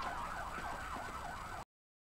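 A warbling, siren-like tone that sweeps rapidly up and down in pitch several times a second. It cuts off suddenly near the end.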